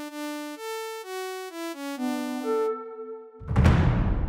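Bright sawtooth synth notes from Vital's default init patch play a short stepwise melody. Each note starts at once and fades as it goes, with envelope 1's decay set to about two seconds. Near the end a loud noisy rush with a deep rumble cuts in over them.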